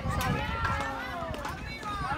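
Spectators shouting and calling out over one another in high-pitched voices as a batter reaches first base on a hit.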